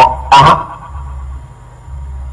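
A man's voice through a microphone and loudspeaker says one short word. It is followed by a pause of about a second and a half that holds only a steady low electrical hum and room noise from the sound system.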